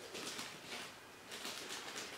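Paper stuffing rustling and crinkling as it is pulled out of a leather handbag, in several short bursts.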